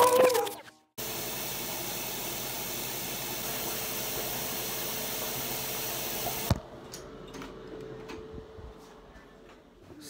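Intro music fades out in the first second. Then a tap runs steadily into a bathroom sink for about five seconds during face washing and cuts off abruptly, leaving faint soft rubbing and small clicks.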